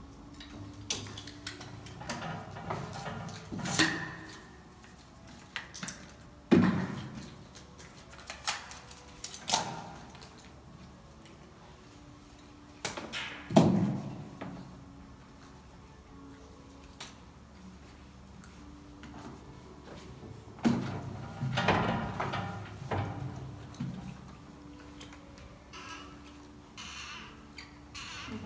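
Scattered clunks, clicks and knocks of hand work with a caulking gun on a metal lift platform, as a crypt front is caulked shut. Two louder thumps come about six and a half and thirteen and a half seconds in, and a cluster of knocks comes near the end.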